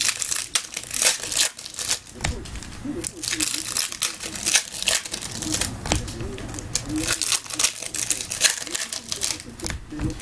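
Foil trading-card pack wrappers crinkling and tearing as packs are ripped open by hand, with the cards being handled; an irregular run of sharp crackles.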